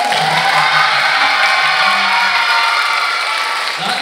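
Applause and cheering from an audience of children and adults. It starts suddenly and dies away near the end.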